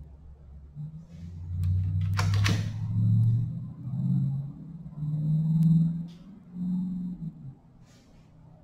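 A man humming a string of low notes at changing pitches under his breath. There is a quick burst of keyboard keystrokes about two seconds in, and a few lighter clicks later.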